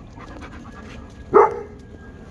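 A dog barks once, a single short, loud bark about 1.4 s in.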